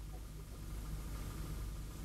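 Steady low hum of an idling engine.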